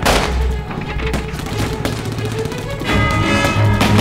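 Film battle soundtrack: gunfire and a loud bang at the start, mixed with dramatic background music that swells into sustained chords about three seconds in.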